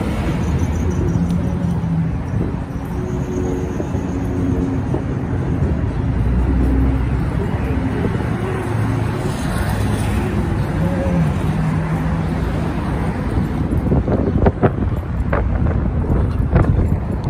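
City road traffic: a steady low rumble of passing cars with engine hum. A few sharp knocks near the end.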